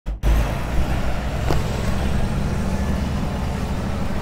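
Steady low rumble of road traffic, a motor vehicle's engine running close by, with one faint click about one and a half seconds in.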